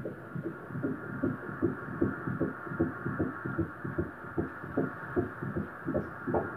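Pulsed-wave Doppler ultrasound audio of a fetal heartbeat at about 13 weeks' gestation: rapid, even whooshing pulses, about three a second, over a steady hiss.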